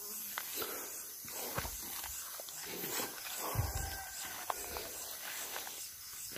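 Footsteps and rustling of people pushing through leafy undergrowth, irregular and fairly quiet, with a few heavier low thuds about three and a half seconds in.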